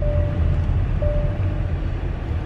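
Car cabin noise while driving: a steady low rumble from the engine and road. A faint held tone sounds twice, briefly at the start and again from about a second in.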